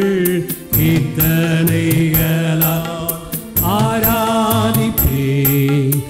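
Singing of a chant-like devotional melody in gliding phrases over a sustained low accompaniment, with sharp percussive taps running through it; the phrases break briefly about half a second in and again after about three seconds.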